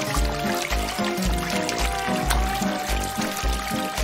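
Background music with a steady beat, over water pouring and trickling from a plastic tube onto a bare foot.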